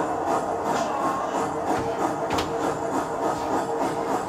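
Action-film soundtrack: background music with a dense rhythmic beat and a held note, and one sharp hit a little over two seconds in.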